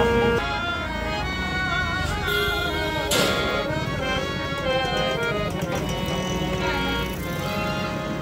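Harmonium being played, with held reed notes and chords sounding over low street-traffic noise. A sharp click comes about three seconds in.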